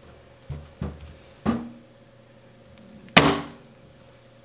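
Soap loaf being cut on a wooden-and-plastic single-bar wire soap cutter: three soft knocks in the first second and a half as the loaf is handled on the plastic tray, then a sharp knock with a short ring about three seconds in, the loudest sound, as a bar is cut off.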